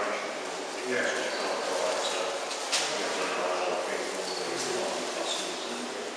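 Indistinct voices of people talking in the background, with one sharp click a little under three seconds in.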